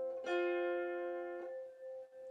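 Two wire strings of an early Irish wire-strung harp plucked together a quarter second in and ringing a fourth apart, C and F natural, as the F is tuned against the C. The notes are damped about a second later, leaving one quieter note ringing.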